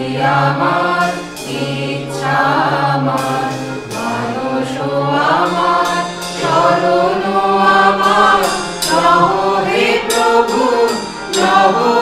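Mixed choir of men's and women's voices singing together to harmonium accompaniment, in sung phrases of a second or two each.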